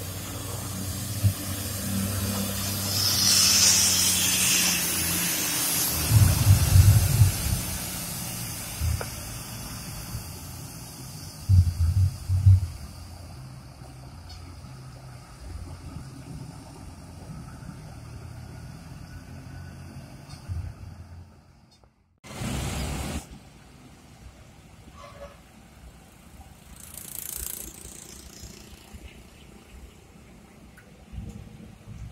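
Coach bus diesel engine running as the bus pulls out and drives away, its sound fading. A burst of hissing comes a few seconds in, and there are two heavy low rumbles partway through. The sound drops out briefly about two-thirds of the way in.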